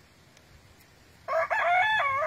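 A rooster crowing once, starting a little over a second in and still going at the end, with a brief break after the first note.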